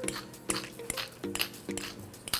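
Stainless-steel pepper mill grinding peppercorns: a run of short, irregular crackling clicks over soft background music.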